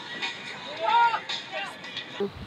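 Soft background music under a steady hiss, with a brief faint voice about a second in.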